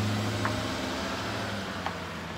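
A motor vehicle's engine running with a steady low hum that slowly fades.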